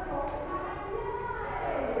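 Several people talking at once, with music or singing faintly mixed in, likely the stadium's walk-out music starting.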